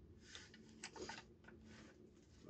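Near silence: faint room hum with a few soft rustles as the rifle is turned in the hands.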